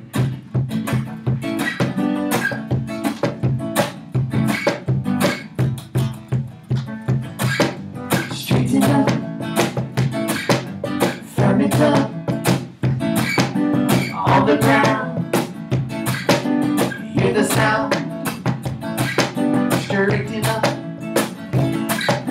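Acoustic guitar strummed over a cajon beating out an upbeat rhythm, the opening of a live song; a woman's voice sings along from about eight seconds in.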